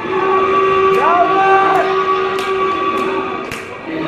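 Hardcore track in a breakdown: steady held synth notes with swooping notes that rise and fall over them, a few sharp hits, and no pounding kick drum.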